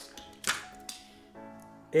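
Soft background music with one sharp plastic click about half a second in: the Bean Boozled game's plastic spinner being flicked.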